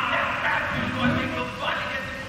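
A voice giving short calls, about three in quick succession.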